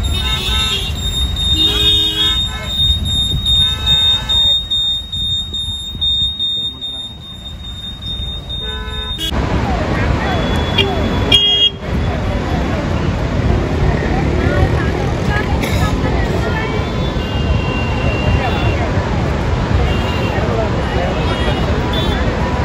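Car horns toot repeatedly in stalled traffic, with voices. Then, after an abrupt change about nine seconds in, the steady rushing noise of water pouring through the open spillway gates of Srisailam Dam fills the rest, with voices over it.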